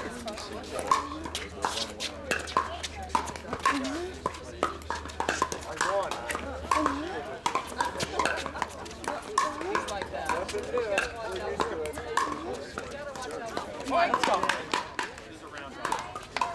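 Pickleball paddles striking a hard plastic ball in a rally: a string of sharp pops, each with a short ring, over background voices.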